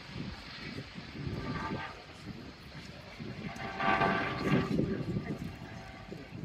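Two rescue helicopters flying over, their rotor noise a low, uneven rumble mixed with wind on the microphone. A pitched sound rises out of it twice, briefly about one and a half seconds in and louder about four seconds in.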